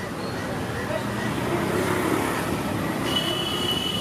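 Busy street background: a steady wash of road traffic with indistinct voices. About three seconds in, a thin, high, steady tone joins it and holds.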